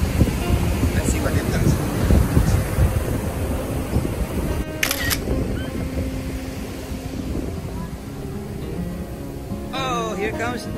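Wind rumbling on the microphone over beach surf, then a single camera-shutter sound effect a little before the middle. After it come soft music with a few steady held notes.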